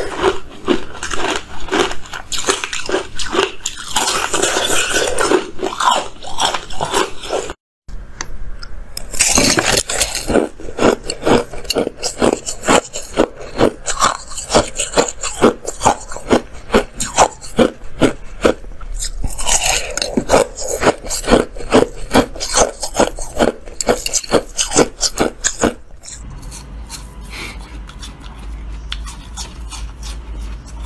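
Close-miked biting and crunching of frozen ice: rapid, crisp cracks as pieces are bitten off and chewed. The sound drops out briefly about a quarter of the way in, and near the end the crunching turns quieter over a low hum.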